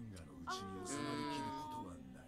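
One long, high-pitched vocal cry lasting over a second, held on one note and falling slightly in pitch.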